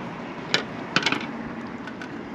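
A few short, sharp clicks or taps, the first about half a second in and two close together near the middle, over a steady hiss.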